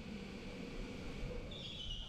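Faint, steady background noise at a go-kart track, with a low hum and a thin high whine that comes in near the end.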